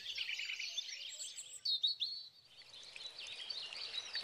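Faint birdsong: many small chirps and twitters, with one clearer chirp near the middle and a brief gap just after it.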